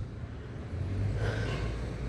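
Street traffic noise: a low, steady rumble of motor vehicles.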